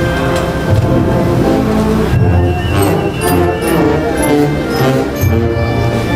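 Band playing a slow Guatemalan funeral march: sustained wind chords over a low bass line, with regular drum and cymbal strokes.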